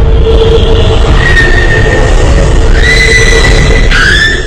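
A jumpscare screamer sound: a very loud, harsh, distorted shriek-like noise with a few high held tones, sustained without a break.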